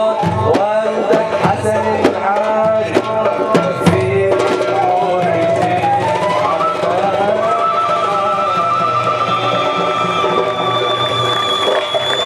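Live song: a man singing through a microphone, accompanied by a hand drum and a flute. The drum strokes thin out about four seconds in, and long held notes follow.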